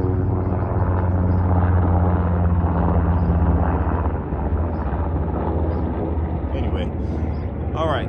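Helicopter flying overhead: a loud, steady low drone that eases off about four seconds in as it moves away.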